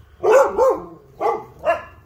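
Dog next door barking: four barks, two in quick succession at the start and two more about a second later.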